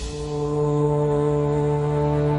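A long, steady horn-like blown note held at one pitch, starting just after the beginning, over a devotional music track.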